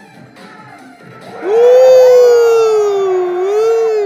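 A man's long, loud, drawn-out high 'ooooh' of amazement comes in about a second and a half in and is held to the end, dipping slightly in pitch and rising again. Quieter background music from the dance battle plays underneath.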